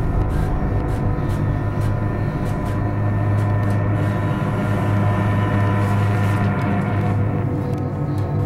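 Low, droning horror-film background music: sustained tones over a steady low hum that swells about three seconds in.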